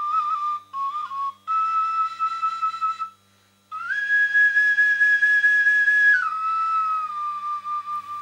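Transverse folk flute (bansi) playing a slow phrase: a few short notes, then a held note, a brief break about three seconds in, a long higher held note, and a step down to a lower held note near the end.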